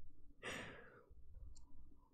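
A woman sighing: one short breathy exhale about half a second in, fading away.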